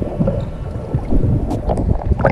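Water sloshing and rumbling around a camera in the sea, heard muffled and low, with a few short splashy blips.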